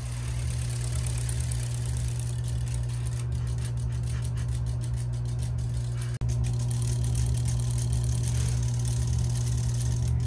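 Steady low motor hum with a few fainter steady tones above it and light ticking higher up. It drops out briefly about six seconds in, then carries on.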